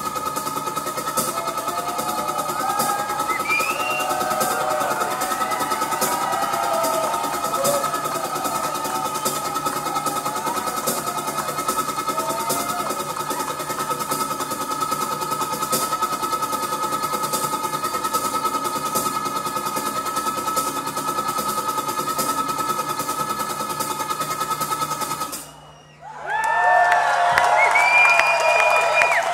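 A sustained electronic drone from a guitarist's effects setup, a steady high held tone with faint regular clicks, while the crowd whoops and shouts over it. About 25 seconds in the drone cuts off suddenly, and the crowd breaks into cheers and whistles.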